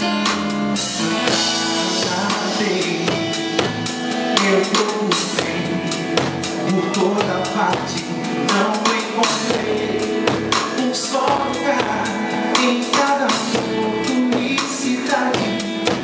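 Live band music: a drum kit playing a steady beat, with bass drum, snare and rim clicks, under sustained pitched instruments.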